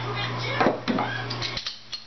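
A few brief clinks and knocks as a beer bottle and glass are handled, over a steady low hum that cuts out about one and a half seconds in.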